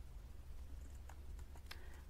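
A few faint computer keyboard and mouse clicks as text is pasted into a form field, over a low steady hum.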